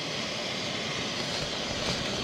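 Camp stove burner running with a steady, even hiss.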